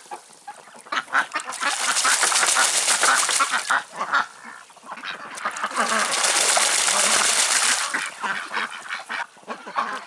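A white Muscovy duck bathing in a tub of water, splashing hard with its wings and body in two long bouts, the first starting about a second in and the second a little past the middle, with quieter dips between.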